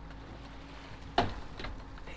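Steady low hum of the boat's triple outboard motors running, with water and wind noise, and one sharp knock a little after a second in.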